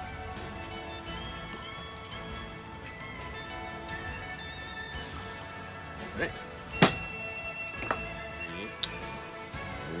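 Background music plays throughout. About seven seconds in, a sharp metallic clink, the steel jigger striking the cocktail shaker, rings on for over a second, with a few lighter knocks around it.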